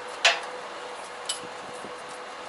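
Two sharp metal clinks of a wrench on the steel fittings of a truck trailer's spare-wheel carrier, a loud one just after the start and a fainter one about a second later, as the spare wheel is being freed.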